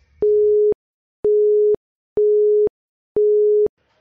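Quiz countdown timer beeping: four identical electronic beeps about a second apart, each a steady single tone lasting about half a second.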